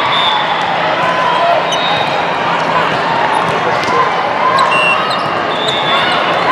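Echoing din of a crowded indoor volleyball hall: many overlapping voices of players and spectators, with the thump of a volleyball being struck and short high squeaks of sneakers on the court.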